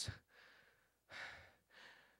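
A man's breath, drawn close to a handheld microphone about a second into a pause, otherwise near silence.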